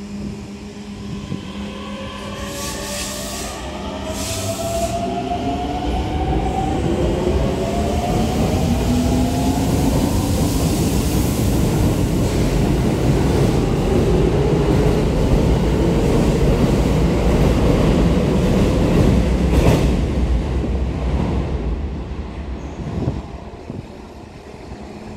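Keikyu 1500-series electric train pulling away from a station. Two short hisses come a few seconds in, then the traction motors' whine rises in several tones as it speeds up. This gives way to steady wheel-on-rail running noise as the cars pass, loudest near the end before it fades away.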